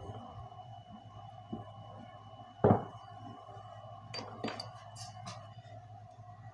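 A metal roller set down on a wooden workbench with one loud knock about two and a half seconds in. A few light clicks and crinkles follow as a sheet of embossed aluminium foil tape is lifted off a mesh, over a steady low hum.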